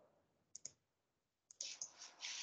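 Faint computer mouse clicks: a quick pair about half a second in, then a few more short clicks near the end, over near silence.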